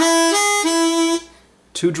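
Diatonic blues harmonica playing a short lick of draw notes: the two draw steps up to the three draw and back down to the two draw, then fades out after about a second.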